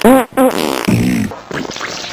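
A fart sound effect: a run of short, pitched blasts that waver up and down in pitch.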